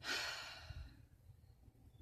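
A woman's sigh: one breathy exhale that starts suddenly and fades out over about a second.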